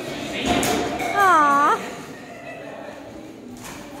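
A single drawn-out vocal exclamation, its pitch dipping and then rising, about a second in, over the hum of a busy indoor hall, with a couple of faint knocks.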